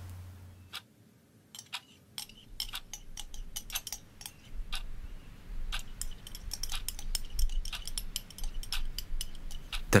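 Irregular small clinks and scrapes of a spoon against a ceramic coffee mug, scraping out the last dregs, growing busier after about a second of quiet, over a faint low hum.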